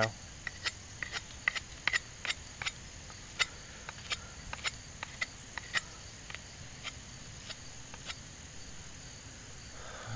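Cold Steel Bushman fixed-blade knife whittling a point onto a wooden stick: a run of short, sharp snicks, two or three a second, as each stroke shaves wood off, thinning out and stopping about eight seconds in.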